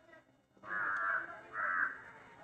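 A crow cawing twice: a call of about half a second, then a shorter one just after.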